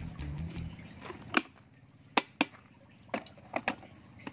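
Water poured into a stainless-steel electric kettle, with low gurgling in the first second. Then a handful of sharp clicks and knocks as the kettle is handled and set down, the loudest about a second and a half in.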